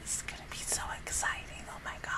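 A woman whispering close to the microphone in short breathy bursts.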